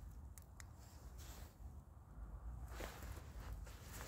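Small paraffin-wax firestarter flame burning faintly under dry kindling, with a few soft, scattered crackles over a low steady rumble.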